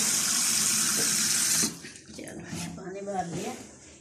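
Kitchen tap running into a plastic measuring jug in a stainless steel sink, a steady rush of water that stops suddenly when the tap is shut off about a second and a half in.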